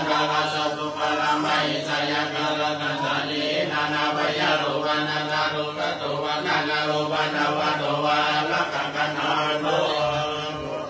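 Buddhist Pali chanting by a group of voices reciting in unison, held on one low, steady pitch with a continuous rhythmic flow of syllables.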